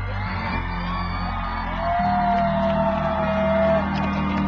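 Live rock band playing loud with electric guitar. A long steady note is held from about two seconds in until just before the end.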